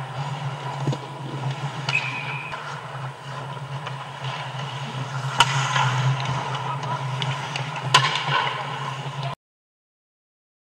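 Ice hockey play close to the goal: skates scraping the ice and sticks working the puck, with two sharp knocks about halfway through and again near the end, over a steady low hum. The sound cuts off suddenly shortly before the end.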